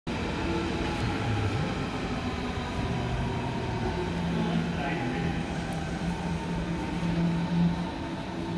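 Berlin U-Bahn F-series train standing at the platform with its doors open, its onboard equipment giving a steady hum of several low tones, with people's voices in the background.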